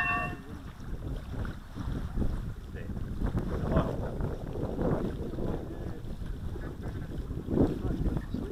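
Wind buffeting the microphone in a gusty, uneven rumble, with faint voices in the background.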